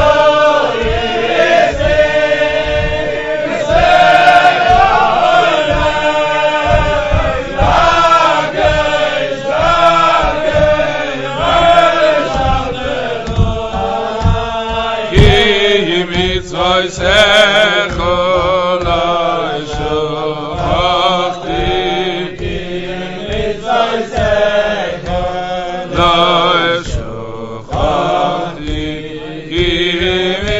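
Voices singing a melody over a steady low beat.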